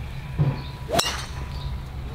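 A golf driver's metal head striking the ball off the tee: one sharp metallic click about a second in, with a short ring after it.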